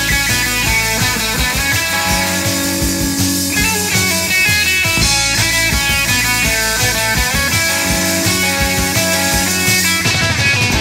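Live pop-punk band playing a song: electric guitar, bass and drum kit, loud and steady.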